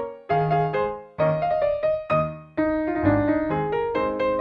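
Background piano music: short phrases of struck notes that fade away, separated by brief pauses, then flowing more continuously from a little past halfway.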